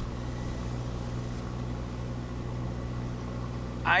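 Steady low hum of a running engine, holding an even pitch without rising or falling. A voice starts to speak near the end.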